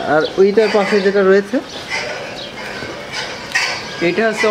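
A man's voice speaking in the first second and a half, then a quieter stretch of barn noise with a few faint clicks.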